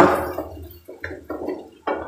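Kitchen handling sounds at the stove: a sharp knock at the start that fades out, uneven clattering about a second in, and a click near the end.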